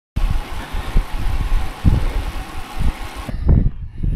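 Wind buffeting the camera microphone while riding a road bike: a loud rushing noise with gusty low rumbles. It cuts off suddenly about three seconds in, leaving a quieter stretch with a few low thumps.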